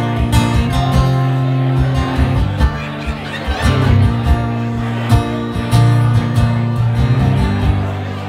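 Acoustic guitar strummed steadily through an instrumental passage of a live song, with no singing.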